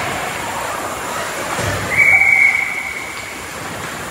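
Ice hockey referee's whistle, one steady high blast of about a second, about two seconds in, stopping play, over the general noise of the rink.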